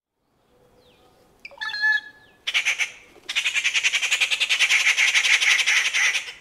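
Rufous treepie calling: a short ringing note about a second and a half in, then a harsh, fast rattling chatter, brief at first and then long and steady from about three seconds in.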